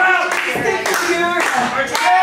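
Hand clapping in a steady rhythm, about two claps a second, with voices shouting over it, in a small echoing room.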